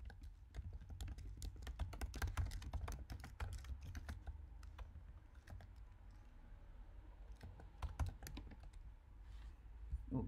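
Typing on a computer keyboard: a quick run of key clicks, densest in the first few seconds and thinning out after, with one sharper click about eight seconds in.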